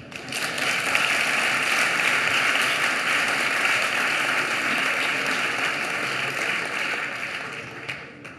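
Audience applause, building up within the first second, holding steady, and fading away near the end.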